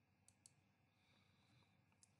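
Near silence: faint room tone, with two faint short clicks close together about a third of a second in.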